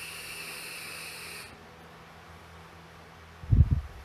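A vape tank being drawn on, a Smok TFV12 Prince: a steady airy hiss with a faint whistle from the air drawn through the firing coil, stopping about one and a half seconds in. Near the end comes a short low gust of breath on the microphone as the vapor is blown out.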